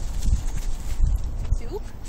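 Doberman puppy digging in sandy dirt: irregular soft thumps and scrapes from its paws, with two short squeaky whimpers near the end.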